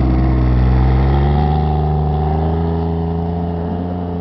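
Jeep Wrangler Rubicon's engine revving under load as it drives through deep snow, its pitch rising over the first second or so and then holding steady, fading gradually as it pulls away.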